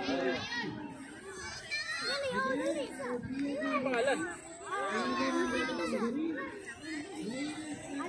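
Children shouting and calling out over one another, with several high-pitched cries.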